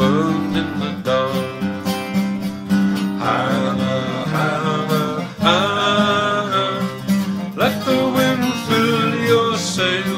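Instrumental break in a folk song: picked acoustic guitar, with a held melodic line over it.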